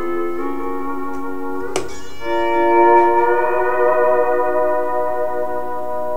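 Fender electric steel guitar playing sustained chords: one chord held, a sharp pick stroke a little under two seconds in, then a new chord that swells up and rings on.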